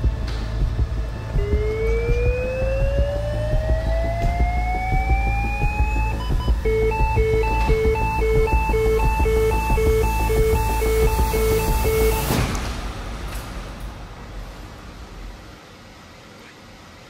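LIFEPAK 15 monitor/defibrillator charging to 200 joules to cardiovert a horse's atrial fibrillation. Its charging tone rises in pitch for about five seconds, then gives way to a steady alternating beeping that signals the charge is ready. The beeping stops suddenly about twelve seconds in as the shock is delivered.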